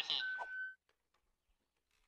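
A single steady electronic bleep, about half a second long, sounding over the tail of a voice; the rest is near silence.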